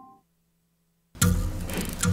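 The last held notes of a station jingle fade out, then about a second of silence, then music cuts in abruptly just after a second in.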